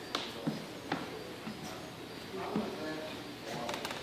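Faint voices of people talking in the background, with a few light clicks in the first second.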